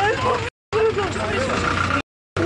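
People's voices on a phone recording, over a steady low rumble like a vehicle running nearby. The sound cuts out completely for a moment about half a second in.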